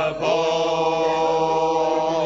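Men's shanty chorus singing the last line of a sea shanty. After a brief break right at the start they hold its long final chord steadily.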